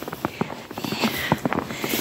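Footsteps crunching through fresh snow: a string of short, irregular crunches.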